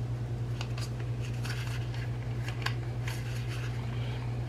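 Plastic hair cap of an Angry Mama microwave cleaner being twisted on its body in the hands, giving a string of small irregular clicks and creaks, with a steady low hum underneath. The cap is being turned to the left, the wrong way for it to come off.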